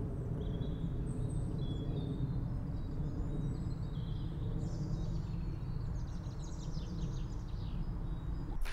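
Outdoor ambience heard through a wired omnidirectional lavalier held at arm's length for a silence test: a steady low background rumble with faint birds chirping, a quicker run of chirps near the end.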